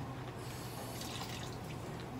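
Wet, liquid sounds of a toy poodle being syringe-fed liquid food, with a short hissy burst about half a second in.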